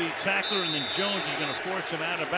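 Football TV broadcast sound: a commentator's voice talking steadily, with a thin, steady high whistle for about a second in the middle, a referee's whistle blowing the play dead.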